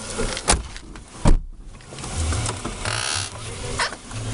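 Thumps and knocks in a car with the engine running at a low rumble. The loudest is a heavy thump just over a second in, like a car door being shut, with lighter knocks around it and a short hiss near the three-second mark.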